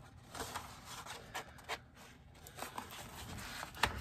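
Faint rustling and sliding of a sheet of decorative paper as it is handled and laid over a cardboard cover, with a few light taps, the sharpest near the end.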